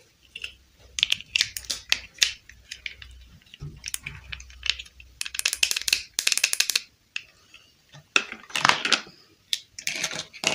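Small hard plastic dollhouse furniture pieces clicking and clattering as they are handled and set down, with longer rattling scrapes about five seconds in and again near the nine-second mark.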